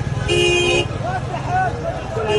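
A vehicle horn honks once for about half a second, a short way in, over people's voices in a crowded street and a steady low rumble.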